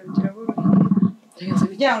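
A woman's voice in conversation, including one drawn-out, held vowel sound in the first second, followed by more speech.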